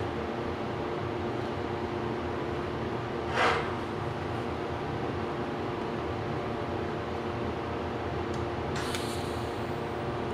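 Steady mechanical hum of a fan running in a workshop, with one brief swish about three and a half seconds in.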